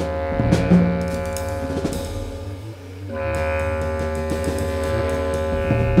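Free-jazz ensemble music: held low horn and string tones over scattered drum and percussion strikes. The tones thin out around two seconds in, then a new sustained chord comes in about three seconds in.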